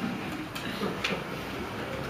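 Pages of a paperback book being leafed through: a soft paper rustle with a light tick about a second in, over quiet room tone.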